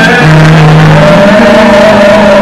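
Loud live gospel music: singers and instruments holding long notes, the pitch stepping up about a second in.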